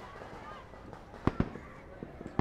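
A pause in the dialogue: quiet room tone broken by two sharp clicks a little over a second in, close together.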